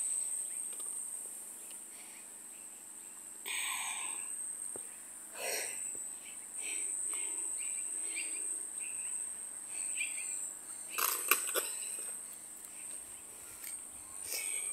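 Insects making a steady high-pitched drone, with a few scattered short sounds and a brief cluster of knocks about eleven seconds in.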